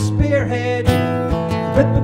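Steel-string acoustic guitar strummed in a folk song, chords ringing between the strokes.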